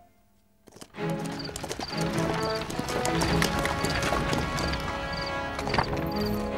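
Horses' hooves clip-clopping as a two-horse carriage pulls up, over music; after a moment of near silence, they start about a second in.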